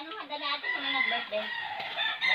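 A rooster crowing, one long drawn-out call.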